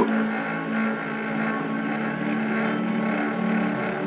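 A steady mechanical hum with one strong low tone and many fainter higher tones above it, running evenly without change.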